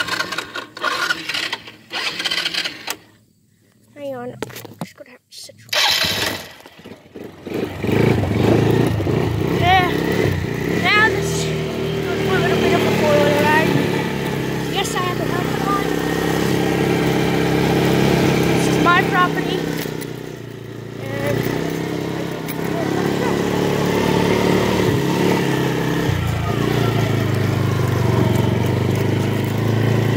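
ATV engine running steadily from about eight seconds in, dipping briefly about two-thirds of the way through. Before it comes in there is rubbing and handling noise on the phone's microphone.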